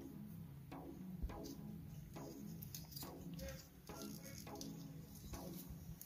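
Faint background music with soft notes recurring at an even pace.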